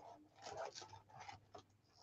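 Near silence, with a few faint, brief rustles and scrapes of packaged card kits being handled and stacked.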